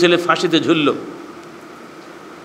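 A man speaking into a microphone for about a second, then a pause filled only by steady faint room noise with a faint hum.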